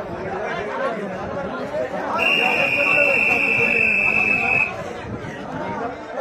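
Referee's whistle blown in one long steady blast of about two and a half seconds, starting about two seconds in, after a tackle ends a kabaddi raid. Crowd chatter and shouting runs underneath.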